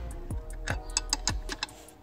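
Hand ratchet clicking in short irregular runs, about four to five ticks a second, as a bolt on a car armrest bracket is tightened.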